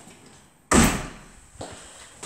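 A double-glazed uPVC rear door being pushed shut: one sharp bang about two thirds of a second in that rings briefly, then a lighter knock near the end.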